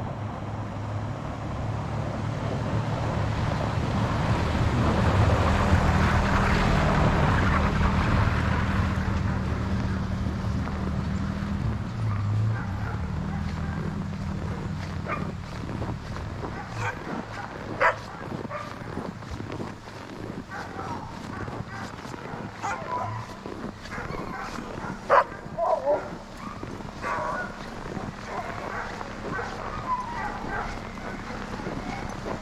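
Pickup truck engine running as the truck drives past and away down the lane, swelling then fading over the first half. In the second half, sled dogs bark and yip in short, sharp, scattered calls.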